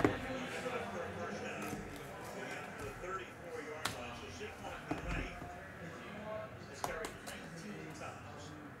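A cardboard trading-card pack box being handled and its seal cut with a small blade, with a few light, sharp clicks and taps spread through the handling.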